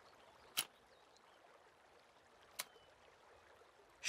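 Near silence: a faint steady hiss of background ambience, broken by two short clicks about two seconds apart.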